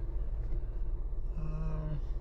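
Toyota FJ Cruiser's 4.0-litre V6 idling, a low steady hum heard from inside the cabin.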